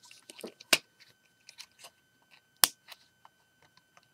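Small plastic Lego pieces and minifigures being handled: light scattered taps and rattles, with two sharp clicks, one near the start and one just past the middle.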